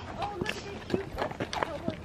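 Footsteps of a person and a led horse walking on a dirt track: irregular soft thuds of feet and hooves, with faint voices behind.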